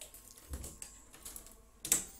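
Several scattered light clicks and taps, the loudest just before the end.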